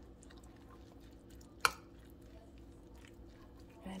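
Metal spoon stirring and mixing a rice and bean bowl in a ceramic bowl: soft squishing of the food, with one sharp clink of the spoon against the bowl about one and a half seconds in.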